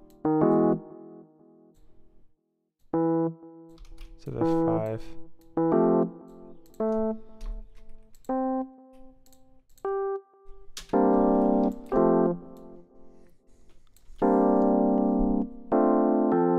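Software electric piano playing jazzy chords one after another as a progression is auditioned: short chords and a few single notes with gaps between them, then longer held chords near the end. Light clicks fall between the notes.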